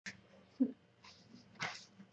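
A woman's brief low murmur about half a second in, then an audible breath near the end; faint overall.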